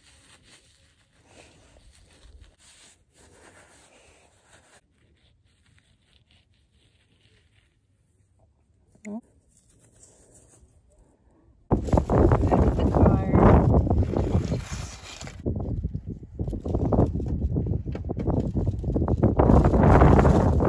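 Gusty wind buffeting the microphone, loud and uneven, starting suddenly about twelve seconds in after a quiet stretch.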